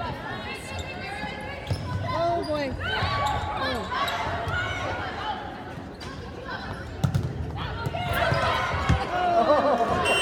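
Volleyball rally in a gym: players' voices calling and shouting over one another, with sharp thuds of the ball being struck, a loud one about seven seconds in and another near nine. The sound echoes in the large hall.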